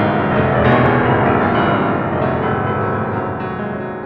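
Improvised keyboard music in a piano sound: a dense cluster of many notes sounding together, thinning out and getting quieter toward the end.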